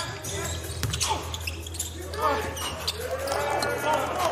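Basketball bouncing on a hardwood court, a few separate strikes, with players' voices calling out on the court over a steady low arena hum.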